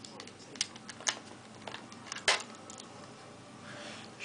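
A few quiet, sparse clicks and taps of a small screwdriver working the mounting screws out of the side of a 2.5-inch laptop hard drive, the sharpest click about two seconds in.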